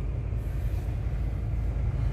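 Steady low rumble inside a parked car's cabin, typical of the car's engine idling.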